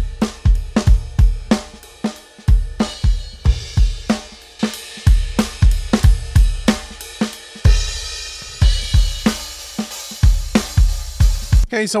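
Soloed drum-kit recording playing back through the Neve-style Lindell 80 channel strip: heavy kick, snare, hi-hats and cymbals in a steady groove, with a big open top end and a lot of bottom end. The drums stop just before the end.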